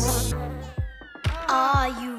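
Cartoon bee buzzing over the end of a children's song as its music fades. A falling glide follows, and a new tune starts about a second and a half in.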